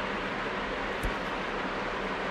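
Steady background hiss of room noise, with one faint click about a second in.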